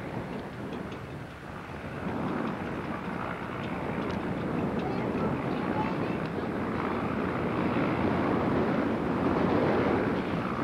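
Goodyear blimp's engines and propellers running as it flies low overhead, growing steadily louder as it comes nearer, with wind noise on the microphone.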